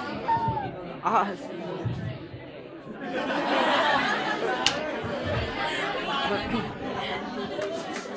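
An audience chattering, many voices at once in a large hall. The chatter grows louder about three seconds in.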